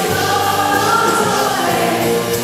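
Live pop band playing a song, with acoustic guitar, electric guitar, bass and drums under sung vocals held on long notes.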